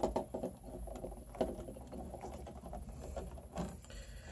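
Faint rustling and small clicks of stiff electrical wires being handled and joined in a wall switch box, with one sharper click about a second and a half in.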